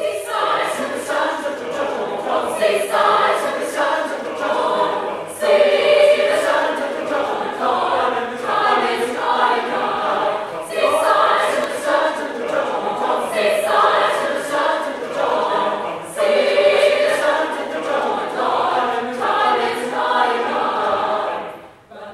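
Mixed chamber choir of men and women singing a spiritual in full harmony, in phrases that each open with a strong entry about every five seconds, falling away just before the end.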